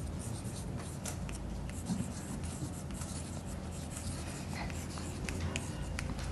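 Chalk writing on a blackboard: a string of short, quiet scratches and light taps as letters are written out.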